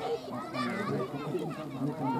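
Indistinct chatter of a gathered crowd, with children's voices among it.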